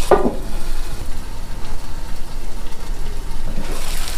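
Grilled cheese sandwich and shredded cheese sizzling on a Blackstone flat-top griddle, muffled under a metal melting dome. Near the end the dome is lifted and the sizzle turns brighter.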